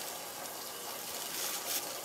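A thin plastic bag rustling steadily as it is handled.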